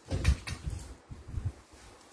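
Handling noise: a handheld phone being moved about, giving several soft thumps and rustles, the loudest right at the start.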